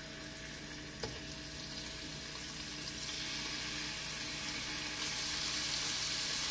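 Strips of raw sirloin sizzling in hot olive oil in a frying pan, the sizzle growing steadily louder as more pieces go into the pan. A single short tap about a second in.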